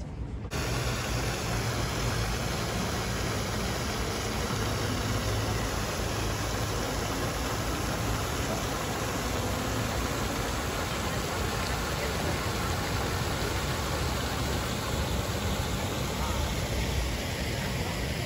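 Fountain jets splashing into a pond: a steady, even rush of falling water that starts abruptly about half a second in.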